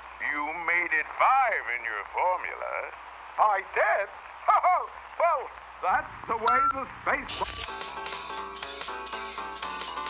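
A cartoon voice babbling in short syllables that each swoop up and down in pitch, played through a television; about six and a half seconds in a brief high ping sounds and the voice gives way to music, as the channel changes.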